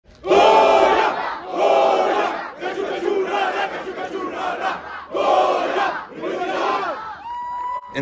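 A football team shouting a team chant in unison: a run of loud group yells, the first two the loudest, dying away about seven seconds in. A single steady high tone follows near the end.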